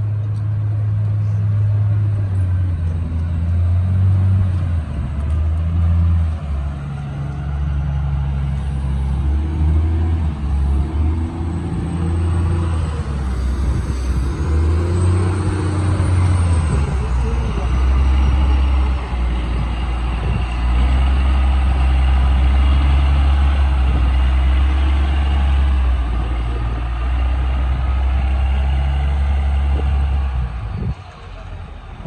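Heavy diesel engine of a wheel loader running close by, its engine speed rising and falling in the first half, then holding a steady low drone.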